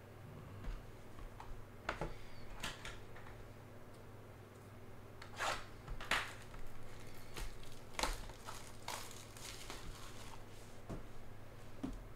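Hands handling trading cards and their packaging on a table: scattered short clicks, taps and rustles as a card goes into a plastic stand and a card box is picked up, over a steady low hum.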